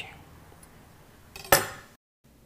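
A single sharp metallic clink of a kitchen knife against a stainless steel bowl about a second and a half in, ringing briefly.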